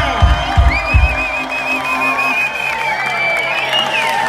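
Live reggae band at the close of a song: the bass drum beats stop about a second in, and the crowd cheers and whoops while the last notes hang on.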